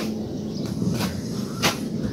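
About four sharp, short clicks at uneven spacing, the last and loudest near the end, over a steady low hum.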